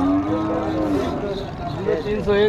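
Cattle mooing: one long, low call of a bit over a second that rises slightly in pitch and then falls away.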